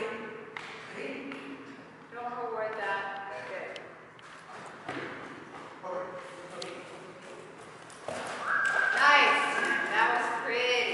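A person's voice calling out to a running dog in short, drawn-out calls: once a couple of seconds in and again, loudest, near the end. Footfalls and scattered knocks on the turf floor come between the calls.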